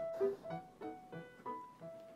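Quiet background music: a light run of short keyboard notes, about three a second.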